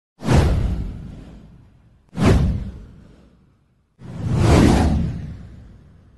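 Three whoosh sound effects from a title intro, about two seconds apart. The first two hit sharply and fade away over a second or so. The third swells in more gradually before fading.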